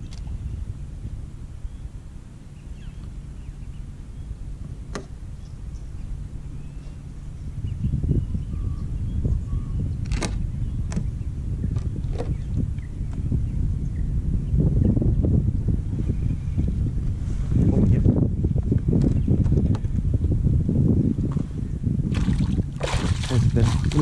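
Water sloshing against a plastic fishing kayak with wind rumbling on the microphone, louder from about a third of the way in. Near the end, a hooked flathead splashes at the surface beside the kayak.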